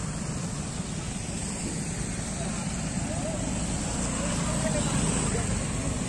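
Motor scooters running on a flooded road: a steady low engine rumble with faint voices in the background.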